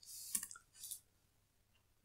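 A few quick computer keyboard keystrokes and clicks in the first second, typing a node name into a search menu, then room quiet.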